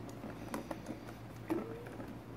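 Plastic ball in the track of a circular cat scratcher toy being batted by a kitten: a few light, scattered taps and clicks, with a louder short sound that has a brief rising tone about one and a half seconds in.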